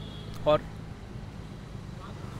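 Steady low hum of street traffic, with a short spoken word about half a second in.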